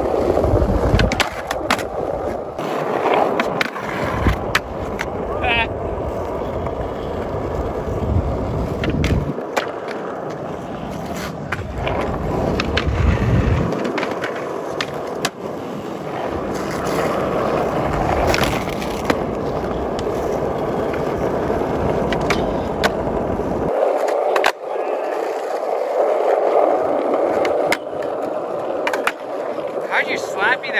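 Skateboard wheels rolling over rough concrete, the rumble stopping and starting as skaters push off and roll out, with sharp clacks of the board against the ground every few seconds.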